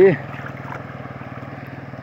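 Motorcycle engine running steadily, a fast, even pulse with a low hum underneath.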